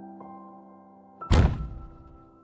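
Soft background music holding a chord. About a second and a half in, a sudden brief thump and rustle: a page of the picture book being turned.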